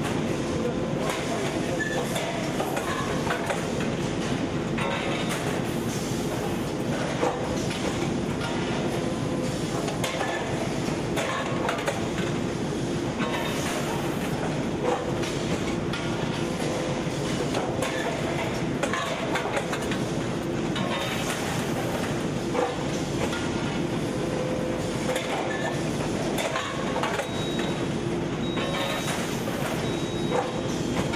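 Rotor aluminium die-casting machine running: a steady mechanical hum with a low held tone, frequent clanks and knocks, and a short hiss about every eight seconds.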